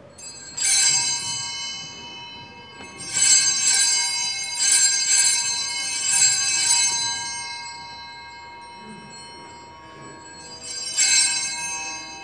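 Altar bells (Sanctus bells) rung in three spells: a short ring about half a second in, a longer ringing with several shakes through the middle, and a third ring near the end. They mark the consecration and the elevation of the host.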